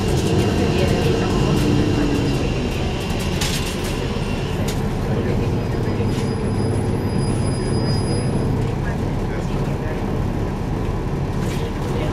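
Interior of a 2012 NABI 416.15 transit bus: the engine's steady low drone heard from the rear seats, with road noise and a couple of brief rattles a few seconds in.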